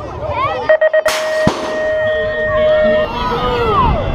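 BMX start-gate cadence: a few quick beeps, then a long steady tone about a second in, with the metal start gate slamming down at the start of the long tone. Riders' and spectators' shouts follow as the riders roll off.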